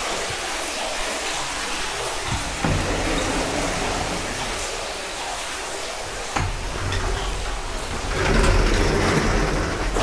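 Steady rushing of hot-spring water pouring into an open-air bath, growing louder about eight seconds in as the glass door to the outdoor bath is opened, with a couple of light knocks.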